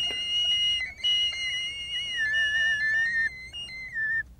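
Electronic sound bed of thin, high whistle-like tones held at several pitches at once. The lower tone slides down a little about two seconds in, and the higher tone breaks off briefly a few times.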